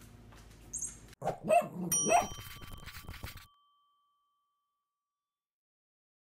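A brief high squeak of the squeaky toy mouse, then two short dog barks and a bell-like ding whose tone rings on and fades.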